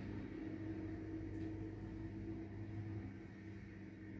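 Quiet room tone: a steady low hum with no other clear sound.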